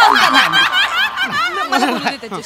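Audience laughter from several people at once, breaking out suddenly and tapering off near the end.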